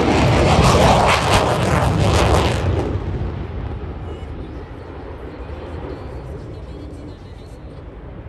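F-35 fighter jet's single engine in afterburner during a low pass, a loud crackling jet noise that fades steadily from about three seconds in as the aircraft climbs away.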